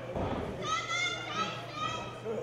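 A child's voice shouting a long, high-pitched call, then a shorter one near the end, over the low murmur of a crowd in a large hall.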